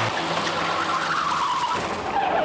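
VAZ-2103 saloon car skidding, its engine running under a tyre squeal whose pitch falls in the second half.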